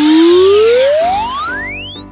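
Cartoon sound effect: a long whistle-like glide rising smoothly from low to very high pitch over children's background music.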